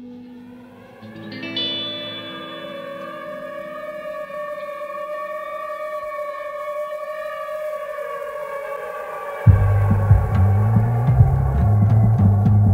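Ambient band music: long held notes on an electric guitar run through effects, echoing and drifting slowly in pitch. About nine and a half seconds in, a loud, deep pulsing bass comes in.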